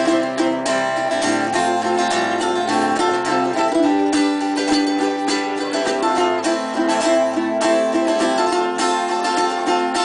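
Acoustic guitar and ukulele strumming chords together in an instrumental passage, with no singing.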